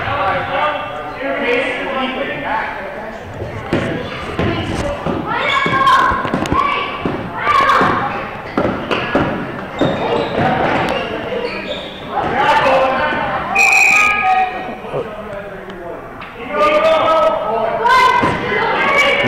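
A basketball being dribbled and bouncing on a hardwood gym floor, with repeated sharp bounces echoing in the large gym.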